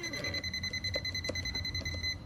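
Burglar alarm system sounding a steady, high-pitched electronic tone, set off by the back door, with a couple of faint clicks.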